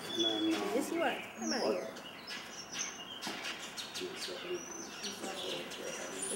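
African wild dog pup giving high, bird-like twittering calls while being handled: a run of whimpering, gliding calls in the first two seconds, then a few thin high chirps. Soft clicks and rustles of handling come in between.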